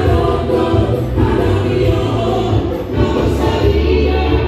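Music playing with a group of voices singing together over a strong, steady bass.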